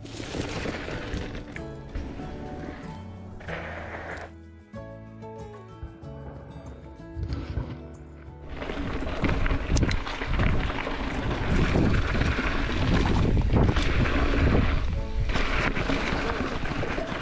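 Background music with held notes, then from about eight and a half seconds in a louder rushing of wind on an action camera's microphone as a mountain bike rolls along the dirt trail.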